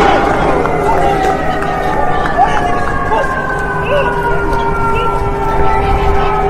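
Emergency vehicle siren sounding a long, steady tone that sinks slowly in pitch, with voices in the background.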